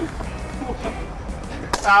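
Background music under faint chatter and murmuring voices, then a man's loud drawn-out shout of "ah" near the end.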